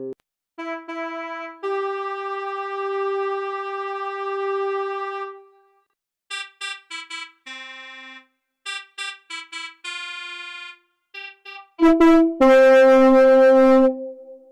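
Quilcom SIM-PF software synthesiser, modelling a pianoforte without samples, playing single piano-like notes: one long held note, then runs of short separate notes. Near the end come louder held notes with a hissy edge.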